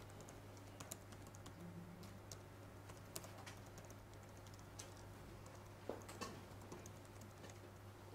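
Faint typing on a computer keyboard: irregular keystroke clicks, a couple of them louder about six seconds in, over a low steady hum.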